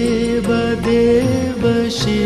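Hindu devotional chant (kirtan) music: a voice holds long sung notes over a low drone, with light percussion strokes.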